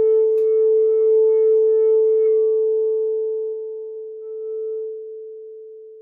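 Frosted crystal singing bowl sounding one steady, pure tone with a few faint overtones as it is played with a wand. The tone holds for about two and a half seconds, then slowly fades. There is a light tick of the wand against the bowl about half a second in.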